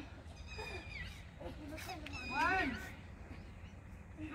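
Bird calls: a few short calls that rise and fall in pitch, the loudest about two and a half seconds in, over faint background voices.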